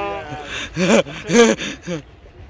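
A woman's voice: a long drawn-out cry tailing off, then three short gasping cries about half a second apart.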